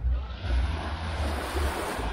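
Small waves washing up on a sandy shore: a hiss that swells and peaks near the end. Wind rumbles on the microphone underneath.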